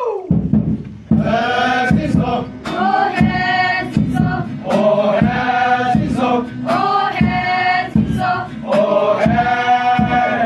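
A choir of women and men singing together in short held phrases over a steady low drone, ending on a long held note near the end.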